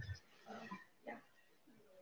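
A few faint, short vocal sounds from a person, low grunts or murmurs, three times in the first second and a bit, then quiet.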